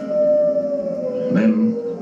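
A wolf's single long howl, held steady and then sliding slowly down in pitch across the whole stretch.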